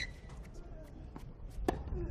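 Tennis ball struck by rackets in a rally on a hard court: a sharp hit right at the start and a louder one near the end, with a fainter knock between, over a low steady background rumble.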